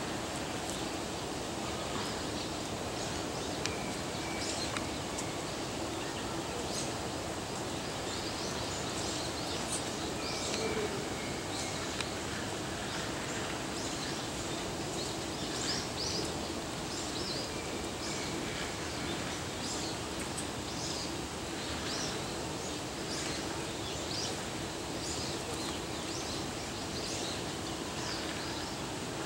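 Steady outdoor background noise with a faint low hum, and many short, high bird chirps scattered throughout.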